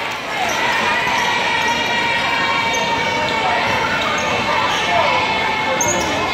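Live basketball game in a gymnasium: a steady hubbub of crowd voices, with a basketball bouncing on the hardwood floor and brief squeaks of shoes on the court.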